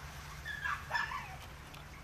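Two short, high-pitched animal calls with bending pitch, about half a second and one second in, over a low steady hum.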